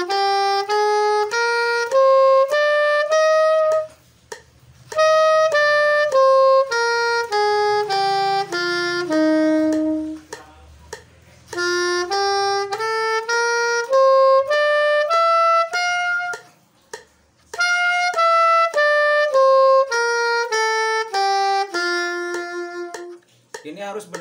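Soprano saxophone playing a practice scale exercise: a run of evenly spaced, separately tongued notes climbing, a short pause, then the run coming back down, the whole up-and-down played twice.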